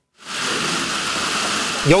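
A steady, even hiss of outdoor ambient noise that starts a moment in, after a brief silence; a voice begins right at the end.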